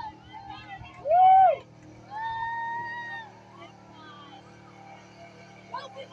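Women in the crowd whooping: a loud rising-and-falling shout about a second in, then a long held high "woo" at about two seconds. Under it runs the steady low drone of the pickup's engine working through the mud pit.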